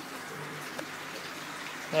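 Low, steady rush of moving water and aeration in an indoor aquaponics and fish-tank system, water circulating and bubbling through the tanks and biofilter.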